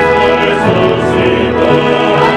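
Choir singing sacred music with instrumental accompaniment, in held, loud chords that shift about half a second in and again near the end.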